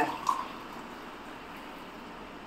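Tea being poured from a steel tumbler into a steel bowl: a soft, steady stream of liquid.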